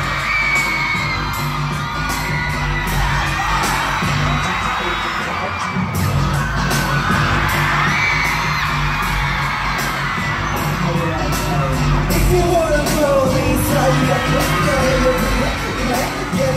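Loud K-pop concert music with a heavy, steady beat through an arena sound system, with fans screaming and cheering over it.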